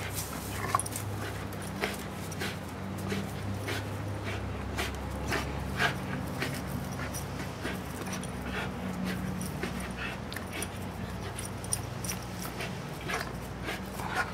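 American pit bull terrier growling low and steadily while tugging at a spring pole toy, with many short rustles and clicks from the rope, his jaws and his paws on the grass.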